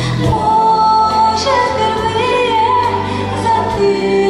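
A woman singing a ballad live into a handheld microphone over instrumental accompaniment. She holds one long note for about the first half, then moves through a few shorter, wavering notes.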